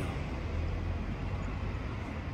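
A steady low rumble under a faint hiss, like distant vehicle noise.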